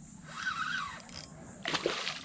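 A hooked redfish thrashing and splashing at the water's surface, a short splash near the end. Before it, about half a second in, comes a faint wavering high-pitched sound.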